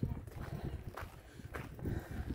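Footsteps on a sandy rock path, a couple of steps about half a second apart, with wind rumbling on the microphone.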